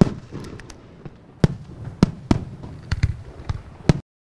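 Aerial fireworks bursting overhead: a string of sharp bangs, about eight in four seconds at uneven spacing, over a low rumble.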